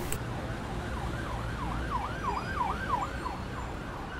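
A faint siren wailing up and down, about two sweeps a second. It fades in about a second in and dies away near the end, over a low steady hum.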